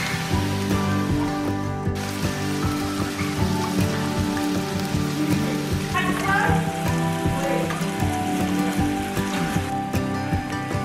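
Beef roast searing in hot oil in a frying pan, giving a steady sizzle, under background music with sustained tones. The sizzle is strongest for the first two seconds and then drops back.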